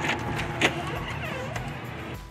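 A steady low rumble with a single sharp click about two-thirds of a second in, the front door's latch.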